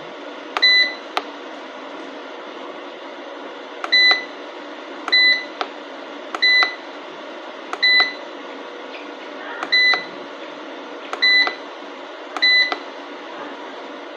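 Front-panel buttons of a 3.2 kW solar inverter being pressed, each press a click followed by a short high-pitched beep. The presses come about eight times, one to two seconds apart, as the display is stepped through its readings.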